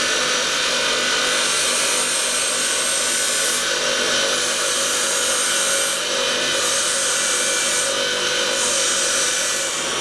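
Bench polishing motor running steadily with a fibre mop, polishing the edge of an anodised titanium pendant to remove the oxide colour. A steady motor hum under a high hiss; the hiss eases off briefly three times.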